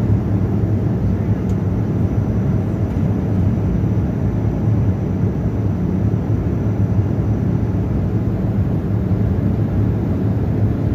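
Steady low roar inside a jet airliner's cabin in cruise: turbofan engine and airflow noise, even and unbroken.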